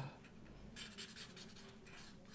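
Felt-tip pen drawing on paper: a run of short, faint scratching strokes, mostly in the second half.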